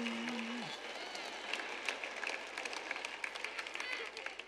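A woman's held 'oh' fades out in the first second, under audience applause. The scattered claps thin out toward the end.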